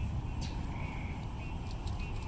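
Wind buffeting the microphone as a steady low rumble, with a short high-pitched call repeating about every two seconds and a few sharp clicks.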